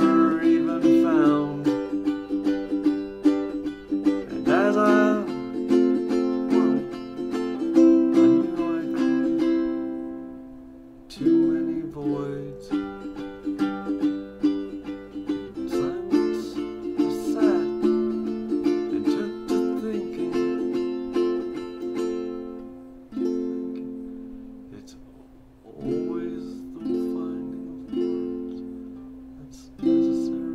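Ukulele strummed in chords. The chords ring out and fade about ten seconds in, then the strumming starts again. Later the chords are struck singly, a second or so apart, and left to ring.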